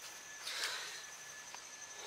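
Faint rustle of hands handling fabric, swelling briefly about half a second in, with a tiny click near the end. A thin, steady high-pitched insect buzz runs underneath.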